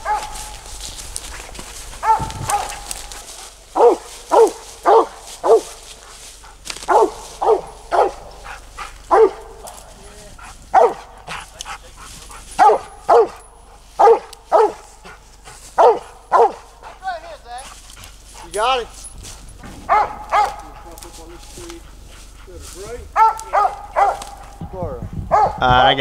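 Squirrel dog giving its treed bark up a tree at a squirrel: a long run of short, loud barks, about one to two a second.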